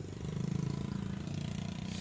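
A small engine running steadily at a low pitch, getting a little louder about a quarter second in.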